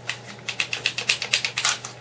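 Plastic clicks and rattles as an airsoft 1911 pistol is tugged against the retention lock of a Blackhawk SERPA polymer holster, which holds it in. The clicks come quickly, several a second.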